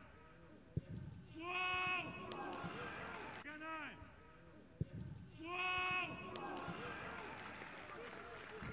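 Loud shouted calls from men's voices on a football pitch, in a two-part pattern that comes twice about four seconds apart: a short rising-and-falling shout, then a longer held call. A single sharp knock comes just after the first shout each time.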